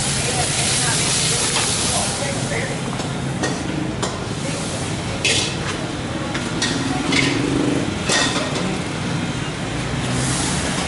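Shrimp and string beans sizzling in a wok for about the first two seconds. After that the busy stall carries on with scattered short clatters, voices and a steady low hum.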